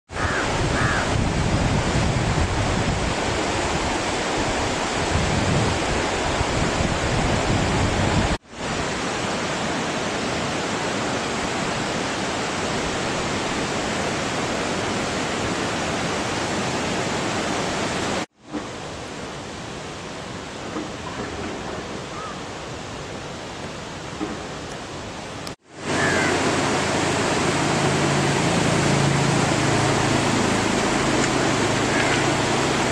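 Steady rush of a fast mountain river flowing over boulders, an even roar of water noise with three brief dropouts. A low hum joins in over the last few seconds.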